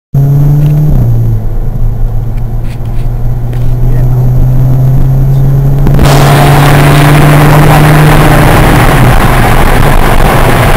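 Engine of the vehicle carrying the camera, running with a steady drone that drops in pitch about a second in, as on a gear change or easing off. About six seconds in, a loud rushing noise starts suddenly and covers the engine: wind buffeting the microphone as the speed rises.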